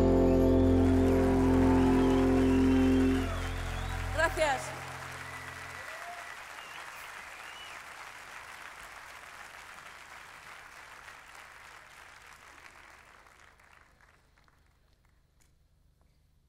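A live band's final chord rings out and stops a few seconds in, with a short shout from the crowd, then audience applause that fades away steadily to near silence.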